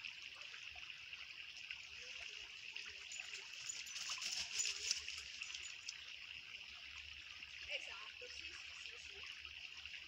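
Small, shallow stream trickling over stones: a steady hiss of running water, a little stronger for a second or two around the middle.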